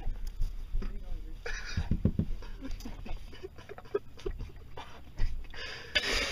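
Breathless, wheezing laughter and panting from people in a car, with knocks from the phone camera being handled.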